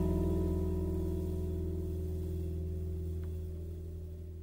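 The last chord of a song ringing out on strummed acoustic guitar, a few held notes slowly fading away with no new notes struck.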